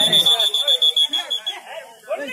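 Referee's whistle blown in one steady high blast that stops about a second and a half in, over crowd voices.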